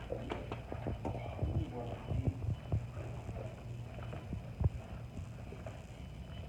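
Irregular soft knocks of footsteps and handling bumps as a phone is carried while filming, over a steady low room hum, with brief quiet voices in the first second or so.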